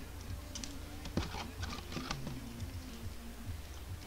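Faint, scattered light clicks and taps of trading cards and plastic card holders being handled, over a low steady hum.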